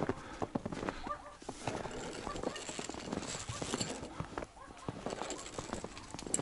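Footsteps in fresh snow: a steady walking run of irregular crunches.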